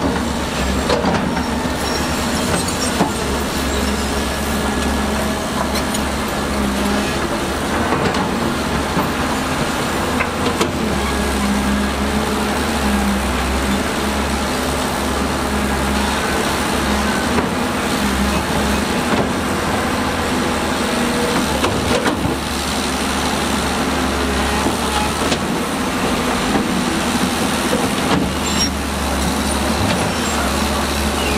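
Diesel engine of a Zoomlion ZE210E crawler excavator running steadily under load as it digs mud, a continuous low drone whose level rises and falls a little as the hydraulics work.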